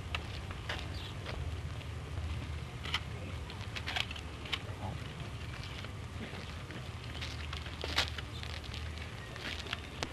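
Surface noise of an early-1930s optical film soundtrack: a steady low hum with scattered clicks and crackles, and no clear event standing out.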